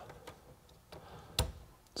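A single sharp click about one and a half seconds in, as the livewell aerator timer is switched on and its relay engages to send power to the pump output. A few faint ticks come before it.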